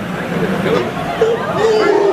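Indistinct chatter of several people talking at once, with a voice growing louder near the end.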